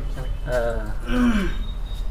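A man's voice: a short spoken phrase whose pitch falls about a second and a half in, with breath noise alongside.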